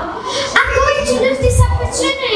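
A girl's voice speaking through a microphone, amplified in a hall; her words are in a stretch the speech recogniser did not transcribe.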